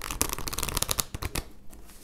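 A brand-new oracle card deck being shuffled by hand: a rapid run of crisp card flicks for about a second and a half, then softer rustling as the shuffle eases off.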